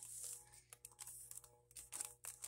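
Faint paper rustling and sliding as paper cutouts are worked into a journal pocket, strongest just at the start, then a few soft ticks.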